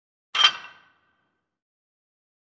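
A single short sudden sound, sharp at the start and dying away within about half a second, with a faint ring trailing after it.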